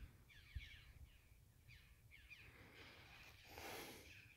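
Near silence, with a series of faint, short falling bird calls and a soft rush of air near the end.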